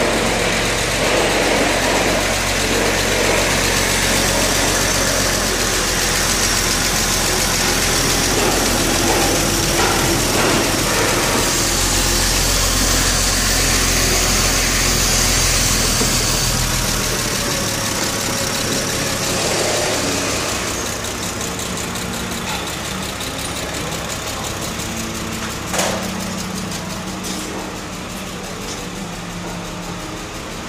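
2005 Porsche 911 Carrera 4S's 3.6-litre flat-six engine running at a steady idle, heard close at the open engine bay. The low drone thins out and drops a little in level about two-thirds of the way through, and there is a single sharp click near the end.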